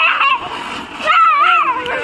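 A ground firework hissing steadily as it sprays sparks across the ground. High voices call out over it from about halfway through.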